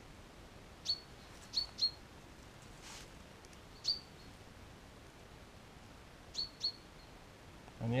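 A small bird calling: about six short, high chirps, each dropping sharply in pitch, some coming in quick pairs.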